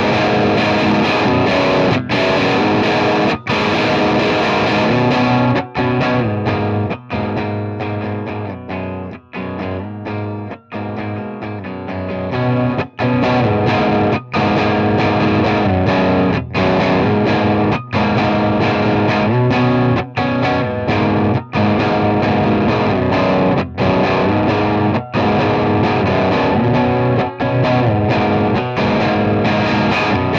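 Electric guitar played through a Science Amplification Mother preamp pedal: sustained chords that change about every second or so, with brief breaks between them and a softer passage about a third of the way in.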